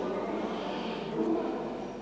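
Indistinct background voices and room noise in a large, echoing hall, a steady murmur with no clear words.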